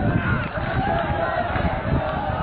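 Continuous voices carrying through a football stadium, steady in level, with no clear words and no break.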